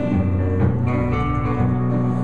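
Live band playing an instrumental passage: guitars over sustained low bass notes.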